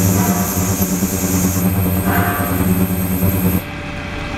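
Ultrasonic cleaning tank running: a loud, steady electrical buzzing hum with a high whine above it and a hiss from the cavitating water. Near the end the hum and whine cut off suddenly, leaving a quieter hiss.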